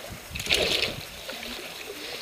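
Hooked striped bass splashing at the surface beside a boat, one short splash about half a second in, then lighter water sounds.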